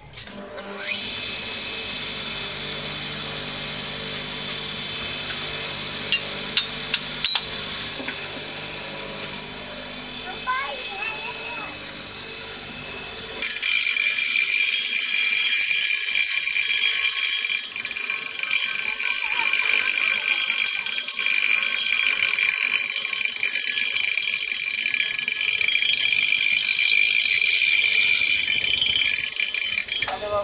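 Bench grinder switched on about a second in and running steadily, with a few sharp clicks a few seconds later. About 13 seconds in, a steel rubber-tapping knife blade is pressed to the grinding wheel, and a loud, high grinding whine runs on to the end.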